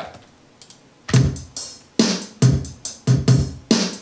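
Programmed MIDI drum beat (kick, snare and closed hi-hat) playing back in Ableton Live with an eighth-note swing groove at 53 committed, so the hits fall slightly off the grid for a looser, more human feel. The beat starts about a second in.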